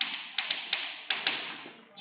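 Chalk writing on a blackboard: about six sharp taps in the first second and a half, with a dry scratching between them that fades out near the end.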